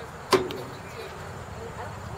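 A single sharp crack about a third of a second in, with a brief ring after it, over faint spectator voices.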